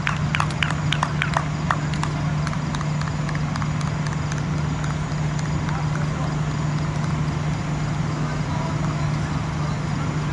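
Scattered hand claps from fielders, a few a second and uneven, dying away about two seconds in, over a steady low hum.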